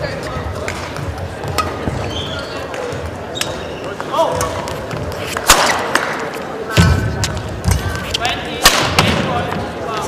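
Badminton rally in an echoing sports hall: a shuttlecock struck back and forth by rackets, sharp smacks about once a second, with short shoe squeaks on the court.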